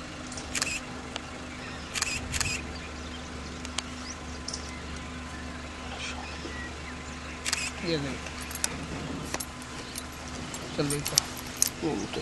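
A safari jeep's engine running at a low, steady hum as it creeps along behind the tigress, with scattered sharp clicks and a couple of brief low voices near the end.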